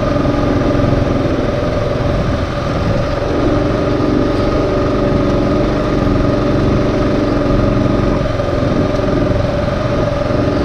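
Adventure motorcycle engine running steadily under way on a rough dirt track.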